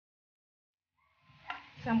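Dead silence for about a second, then faint stirring of greens in a pan with one sharp click of the spatula against it about halfway through, before a woman's voice begins near the end.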